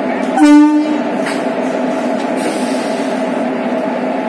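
A train horn gives one short, loud blast about half a second in, over the steady hum of a WAP-4 electric locomotive standing coupled to its coaches.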